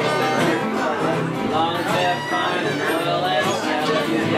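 Acoustic string band playing a bluegrass-style tune: several acoustic guitars strumming with a fiddle, steady throughout.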